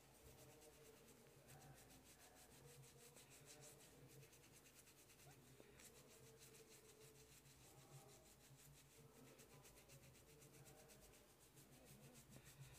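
Faint rustling and rubbing of fingers working through long hair and massaging the scalp.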